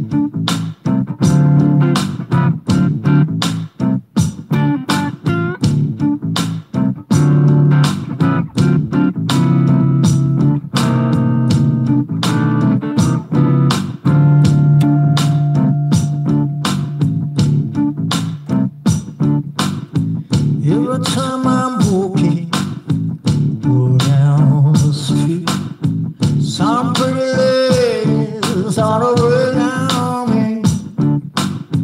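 Blues jam on an electric guitar over a steady looped percussion beat and bass line. In the second half, bent, wavering lead notes come in over the groove.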